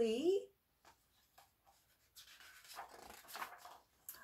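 A picture book's paper page being turned: a few faint clicks, then a soft rustle of paper lasting about a second and a half, starting about two seconds in.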